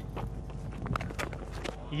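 Cricket ground ambience on the stump microphone during a delivery: light footfalls from the bowler's run-up and a sharp crack of bat hitting ball about a second in, over a faint steady background with a low hum.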